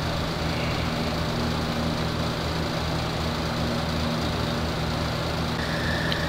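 Steady low mechanical hum with several low held tones, like an idling engine; a thin high tone comes in near the end.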